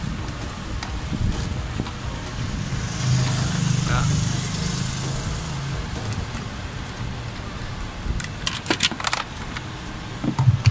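Screwdriver working screws out of a car's plastic interior pillar trim, with a quick cluster of sharp metallic clicks and rattles near the end as a screw comes free. A low engine hum swells and fades in the middle.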